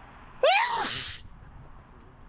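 A man sneezing once, about half a second in: a short cry that rises and falls in pitch and ends in a hiss.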